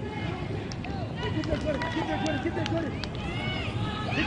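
On-field sound of a soccer match: players' short shouts and calls across the pitch, with scattered sharp knocks, over a steady outdoor background.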